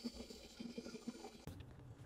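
AccuQuilt GO! Big hand-cranked die cutter being cranked, drawing the die board and quilted fabric through its rollers to cut it. Faint, with light irregular ticks.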